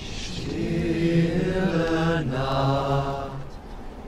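A low man's voice singing a slow melody in long held notes, with a short break and a new phrase starting about halfway through.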